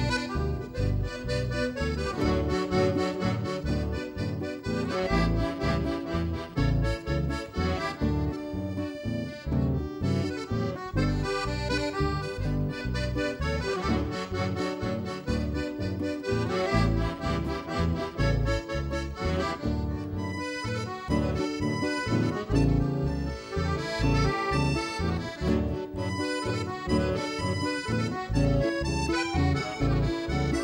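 Instrumental chamamé: a piano accordion carries the melody over strummed nylon-string acoustic guitar and electric bass, in a steady dance rhythm.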